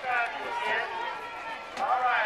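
People's voices talking, indistinct speech that the recogniser did not pick up as words.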